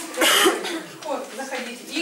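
A person coughs once, loudly, just after the start, then talking follows.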